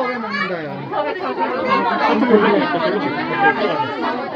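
Several people talking over one another: a steady hubbub of overlapping voices with no single clear speaker.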